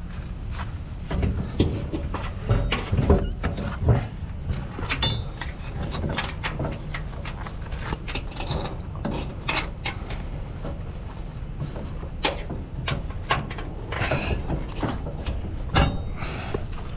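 Irregular knocks, clanks and rattles as a tarp is stretched and fastened over a roll-off dumpster, with a quick run of ratchet-like ticks about five seconds in. A steady low rumble, typical of the truck's engine idling, runs underneath.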